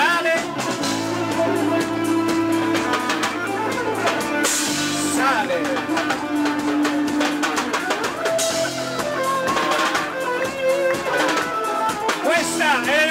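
Live band music: electric guitar playing lead lines with bending notes over a drum kit, with two cymbal-like washes of hiss about four and eight seconds in.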